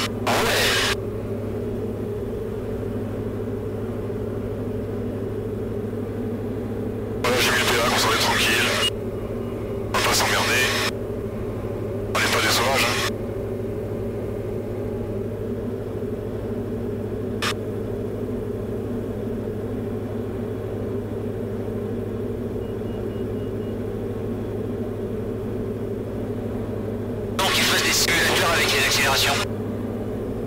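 Diamond DA40 light aircraft's engine droning steadily in the cabin, heard through the headset intercom. It is broken by five short bursts of voice, like radio calls: one near the start, three between about 7 and 13 seconds, and one near the end.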